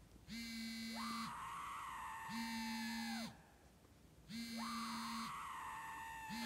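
Phone ringtone of an incoming call: a low tone pulsing about a second on, a second off, under a higher tone that swoops up and slowly sinks, twice.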